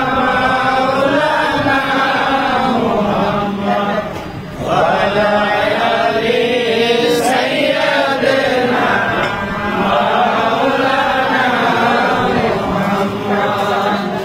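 Voices chanting a devotional Islamic chant, sung on without a break except for a short dip about four seconds in.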